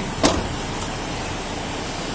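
A vehicle engine idling steadily, with one sharp click shortly after the start.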